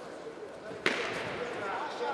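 A single sharp smack of a kickboxing strike landing, a little under a second in, over voices in the hall.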